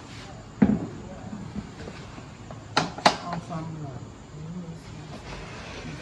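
A large aluminium cooking pot full of stew being handled and set down: a heavy knock about half a second in, then two sharp knocks in quick succession about three seconds in.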